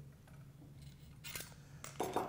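Low room tone, then two light metallic clicks in the second half as a metal LED retrofit module and its bracket are handled.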